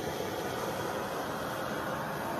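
Handheld heat gun blowing a steady rush of hot air over wet acrylic paint to pop the surface bubbles.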